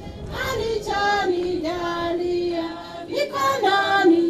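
A group of people singing a slow hymn, with high women's voices most prominent. The phrases move in steps and include a long held note near the middle.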